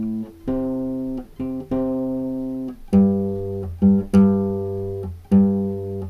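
Nylon-string classical guitar playing the song's repeating bass line: single low notes plucked one after another and left to ring, the pitch shifting from note to note in an uneven rhythmic figure.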